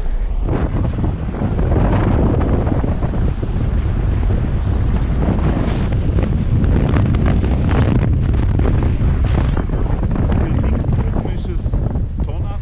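Wind buffeting the microphone from a moving car, a loud, steady low rumble broken by gusts.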